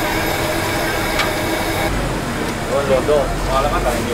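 Dough pieces deep-frying in a large shallow pan of hot oil, against busy street noise with traffic and voices. The background shifts about halfway through, and voices come up over the last couple of seconds.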